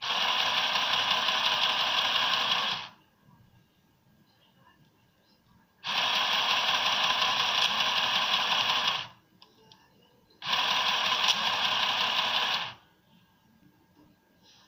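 Irit HOME ARP-01 mini electric sewing machine stitching fabric in three runs of about two to three seconds each, starting and stopping abruptly with quiet gaps between. Its pedal only switches the motor on and off, so each run goes at one steady speed.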